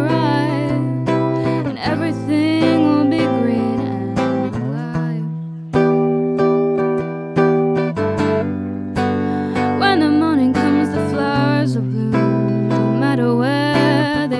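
Electric tenor guitar strummed in chords, with a young woman's singing voice over it for the first few seconds and again in the last few seconds. In between, the guitar plays on its own.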